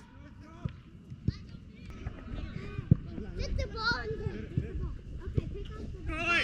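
Players' voices calling and shouting across an outdoor football pitch, with a few scattered thuds.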